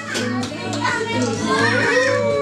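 Upbeat background music with a steady beat, mixed with a roomful of children chattering and calling out.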